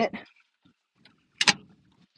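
Steel glove box door on a 1946 Dodge pickup's metal dashboard shutting with one sharp metallic clack about one and a half seconds in, ringing briefly.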